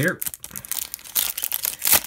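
Foil wrapper of a hockey trading-card pack crinkling and tearing as it is carefully peeled open by hand, a dense run of crackles that gets louder in the second half.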